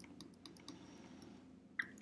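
Faint scattered clicks and ticks of a stylus on a pen tablet while handwriting, with one sharper click near the end.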